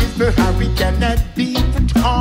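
Live reggae band playing: a heavy bass line under electric guitar and keyboard, with a man singing.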